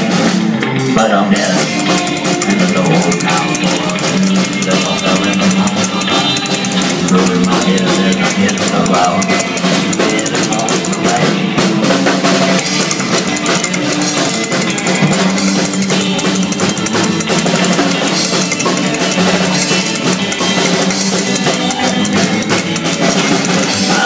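Live rockabilly band playing an instrumental passage without vocals, with a steady drum-kit beat of bass drum, snare and rimshots over a driving bass line.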